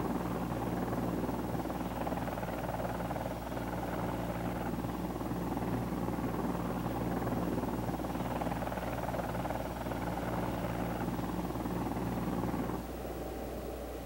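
Sikorsky CH-54A flying crane helicopter hovering, its rotors and twin gas turbine engines running steadily. About a second before the end the sound drops to a quieter hum.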